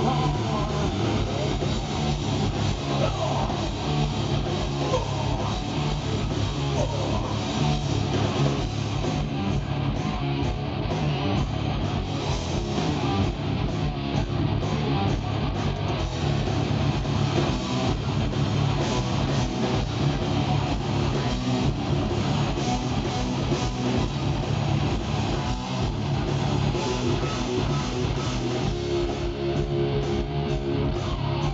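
Live rock band playing electric guitars, bass guitar and drums at a steady loud level, heard through a handheld camera's microphone in the audience.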